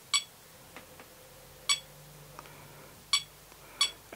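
ToolkitRC M6 smart charger's button beeper: four short electronic beeps, unevenly spaced, one for each button press as the charge current is stepped up and the Charge option is selected.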